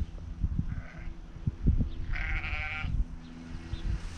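Sheep bleating: a short bleat about a second in, then a longer, louder, quavering bleat about two seconds in, over a low, gusty rumble.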